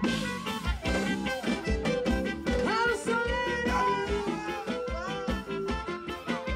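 Live band playing an instrumental passage of an upbeat dance song: a steady kick-drum beat under a gliding melodic lead line.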